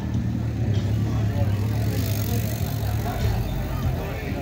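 An engine running steadily at idle with a low hum, with people talking in the background.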